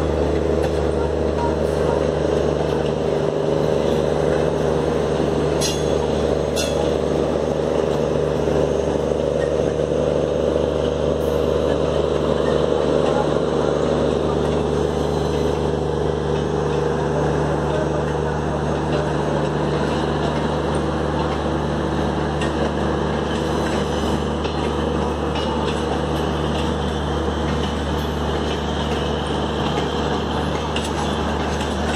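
Steady running rumble and hum of a train heard from on board, at an open doorway as it pulls out. A mid-pitched hum in the noise fades about halfway through.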